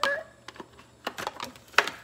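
Oracle cards being shuffled by hand: a quick run of light clicks and flicks of card edges, with one louder snap near the end.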